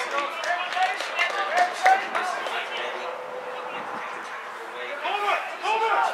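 Footballers shouting short calls to each other on the pitch, on and off throughout, with a few sharp knocks among them.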